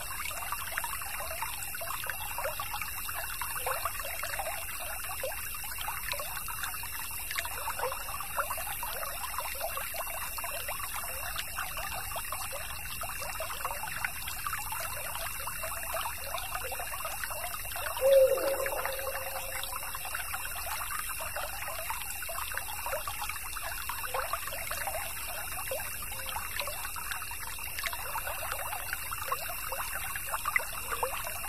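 A small stream trickling and babbling steadily. About eighteen seconds in there is one louder, brief sound that drops in pitch.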